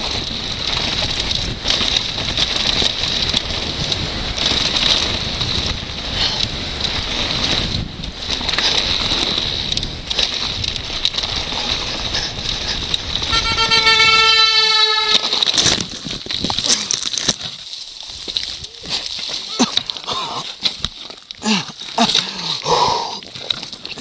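Helmet-camera audio of a downhill mountain bike running fast over a rocky dirt trail: a constant rush of wind and the rattle of the bike over stones. About thirteen seconds in, a horn sounds for about two seconds, and near the end sharp knocks and clatter come as the bike crashes.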